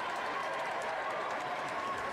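Indoor fencing-hall ambience: indistinct voices and chatter echoing in a large hall, with light footsteps on the piste.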